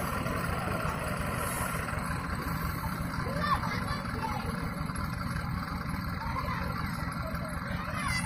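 Diesel tractor engine running steadily with a low, even rumble, and faint voices in the background.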